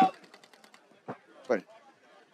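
Speech: a male commentator's voice trails off, then there is a quiet stretch with a short word about one and a half seconds in, over a faint background.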